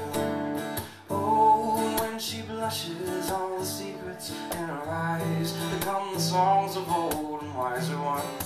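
Acoustic guitar strummed in a steady rhythm, playing a live song accompaniment with no words sung.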